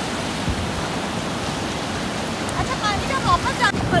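Sea surf washing in over the sand in a steady rush of noise.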